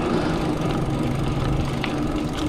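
Steady rumble of a mountain bike's tyres rolling over a concrete road, with wind on the riding camera's microphone and a brief click near the end.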